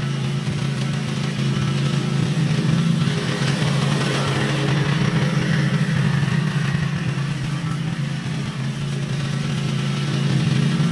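Petrol walk-behind mower engine running steadily under load as it cuts tall grass, a little louder as the mower passes closest.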